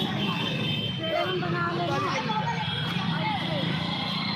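Busy street crowd: many voices talking at once over the steady running of motorcycle engines.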